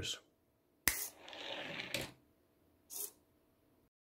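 A single finger snap a little under a second in, then a brief mechanical whir and rattle as the micro servo swings the gate up and the toy car runs down the plastic track, ending in a click at about two seconds. There is another short, fainter rattle about three seconds in.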